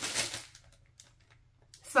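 Crinkly rustling of something being handled close to the microphone, fading out within about half a second, then near quiet with a faint click; it sounds like ASMR.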